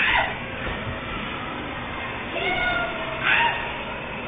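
Young children's high-pitched squeals and shrieks: a sharp one right at the start and another about three seconds in, with a short gliding cry just before it, over the general noise of children playing.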